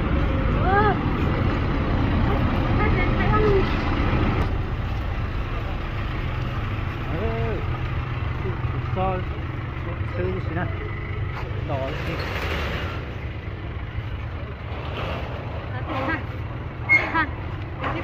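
A steady low rumble of a vehicle engine running, with a brief hiss about twelve seconds in and short snatches of talk.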